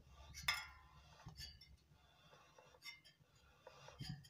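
Faint metallic clinks and ticks from a spoked motorcycle rear wheel and brake assembly being turned by hand with the brake held on, the shoes dragging round the drum. One sharper, ringing clink comes about half a second in, followed by a few lighter ticks.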